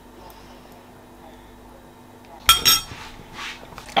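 Metal spoon clinking against a ceramic bowl once, about two and a half seconds in, after a quiet stretch with a faint steady hum.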